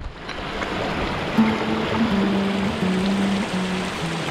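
Shallow mountain stream rushing over rocks, with background music of held low notes coming in about one and a half seconds in.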